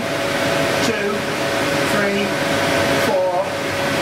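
Steady rushing air from a CO2 laser machine's blowers (air assist and fume extraction) running through a timed burn into an acrylic block, with a faint steady hum.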